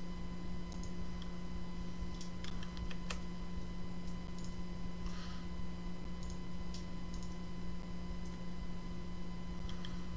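Computer mouse clicking, a scattered series of short, sharp clicks at irregular intervals, over a steady low electrical hum.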